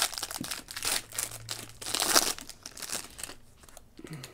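Trading-card pack wrapper crinkling and crackling as the cards are pulled out of it, a run of small crackles that dies away about three seconds in.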